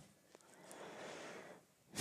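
Very faint intake of breath by the narrator in a pause between sentences: a soft, even breath noise lasting about a second, near the middle.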